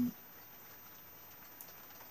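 A man's voice trails off at the very start, followed by quiet room tone: a faint steady hiss, broken by a single faint click about one and a half seconds in.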